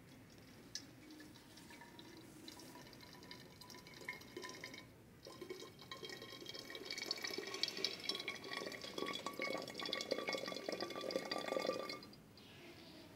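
Just-boiled water poured from an electric kettle into a glass bottle: a thin trickle at first, a brief pause about five seconds in, then a heavier stream whose faint ringing pitch creeps upward as the bottle fills, stopping suddenly.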